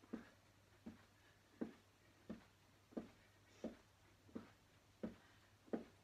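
Faint, regular soft thuds of trainer-clad feet landing on a carpeted floor, about three every two seconds, as the feet alternate in mountain climbers against a wall.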